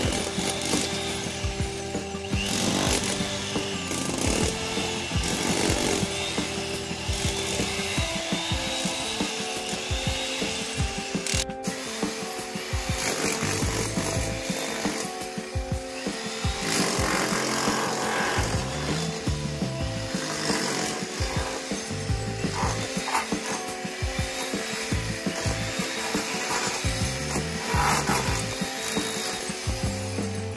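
Corded electric chipping hammer chiselling a groove through cement plaster into the brick wall, running with a dense rattling noise. Background music plays along with it.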